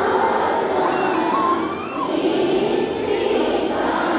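A congregation's many voices sounding together in one dense, unbroken mass.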